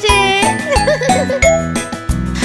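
Instrumental children's song music with a steady beat, in a break between sung verses.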